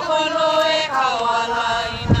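Voices singing a slow chant in long held notes with slight vibrato, moving to a new pitch about halfway through.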